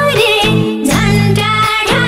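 Nepali dohori song: a woman sings a wavering melodic line over steady instrumental backing.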